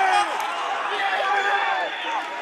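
A man's voice, the match commentator, speaking over a steady haze of stadium crowd noise.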